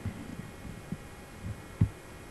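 Several dull, low thumps, about four in two seconds with the loudest near the end, over a faint steady hum.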